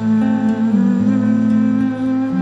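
Slow live music: a digital piano holds sustained chords, with an acoustic guitar and a wordless hummed vocal line that bends gently in pitch.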